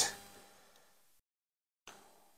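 Near silence: faint room tone that fades and then cuts out completely for more than half a second before returning abruptly, the mark of an edit in the recording.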